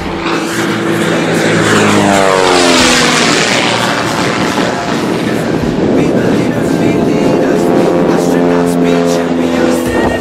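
Pitts S-2B aerobatic biplane's propeller and six-cylinder Lycoming engine in a close pass, the pitch dropping steeply about two to three seconds in as it goes by. The engine then runs loud and steady, its pitch rising again near the end.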